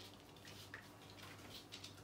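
Near silence with a few faint ticks of a puppy's claws on a hard wood-effect floor as it walks.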